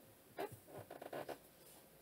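Faint, brief rustling and scraping close to the microphone: one short stroke about half a second in, then a quick run of them around the one-second mark.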